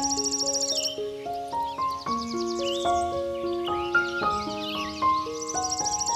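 Slow piano music of sustained, stepping notes over a nature ambience. A fast pulsing insect trill stops about a second in and returns near the end, with short chirping calls in between.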